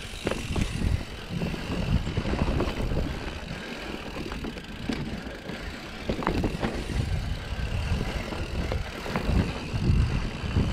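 Mountain bike riding down dirt forest singletrack: a low rumble from the tyres on the trail, broken by irregular knocks and rattles from the bike over roots and bumps.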